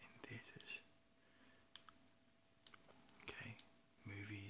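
Faint whispered speech, with a few soft clicks in between and a faint steady hum.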